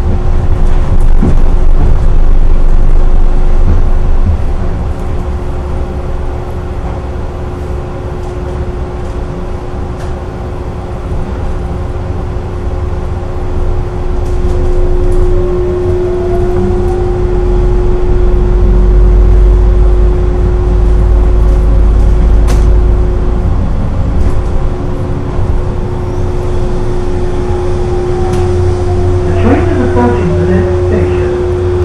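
Cabin of O'Hare's automated rubber-tyred people-mover tram (Matra VAL 256) in motion: a steady running rumble with a constant hum. Its motor whine rises in pitch as the tram speeds up about halfway through, then falls away as it slows into a station near the end.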